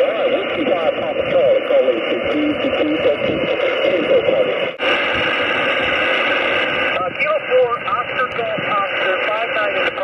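Single-sideband voices of distant amateur radio stations coming through an HF transceiver's speaker, thin and narrow-sounding over steady static hiss. About five seconds in, the audio cuts abruptly to a couple of seconds of plain band noise before another station's voice comes in.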